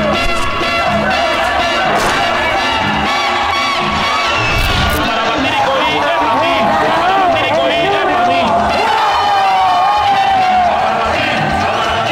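A crowd shouting and cheering excitedly over music.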